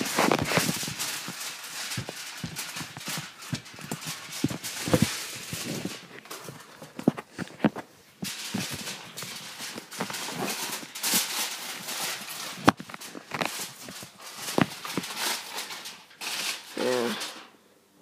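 A jumble of irregular clicks, knocks and rustles from moving about a kitchen and fetching a roll of tin foil, with a short bit of voice near the end.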